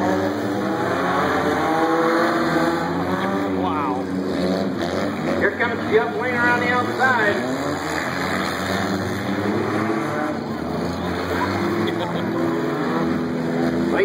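Several figure-8 race cars (stripped street sedans) running and revving around a dirt track, their engines overlapping at different pitches. Engine pitch rises sharply as cars accelerate, about four seconds in and again around six to seven seconds in.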